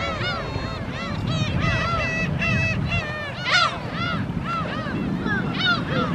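A flock of gulls calling again and again, many short arched cries overlapping, with one louder cry about three and a half seconds in. A steady low rumble runs underneath.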